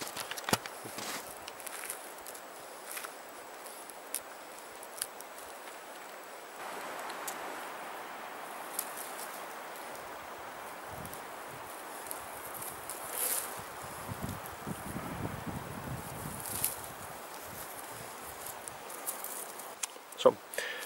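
Rustling, small snaps and scraping of dry lichen, spruce sap and birch bark being gathered by hand for fire tinder, with a few footsteps in snow and scattered sharp clicks over a steady hiss.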